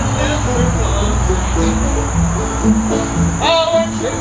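Acoustic string band playing an instrumental break, a picked melody of quick stepped notes over guitar accompaniment. A steady high insect buzz, like crickets, runs underneath, and a brighter, gliding note rises over the music near the end.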